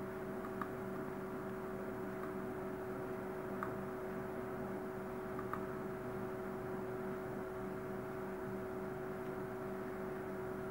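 Steady background hum and hiss of a recording setup, with two faint steady tones running under it. A few faint clicks come through about half a second, three and a half and five and a half seconds in.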